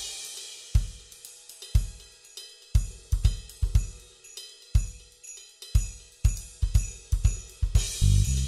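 Background music: a drum kit playing on its own, kick and snare under steady hi-hat and cymbals, the beat sparse at first and busier after about three seconds.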